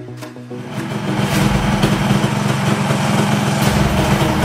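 A Honda Raider Super Sprint 135 cc motorcycle engine running, coming in about a second in and holding steady and loud, heard together with background music.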